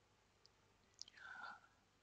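Near silence: room tone, with a faint whispered breath from the narrator about a second in.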